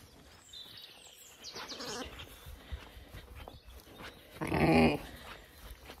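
A Zwartbles sheep bleats once, loudly, for about half a second a little over four seconds in, after a fainter call near the start.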